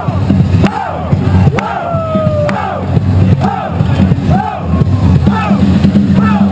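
Loud breakbeat music played over a sound system, with the surrounding crowd shouting and cheering in repeated calls about once a second.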